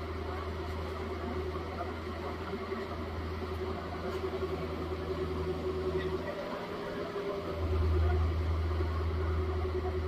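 Compact excavator's diesel engine running steadily as it digs, with a steady hum over it. The low engine sound drops away briefly about six seconds in, then comes back louder.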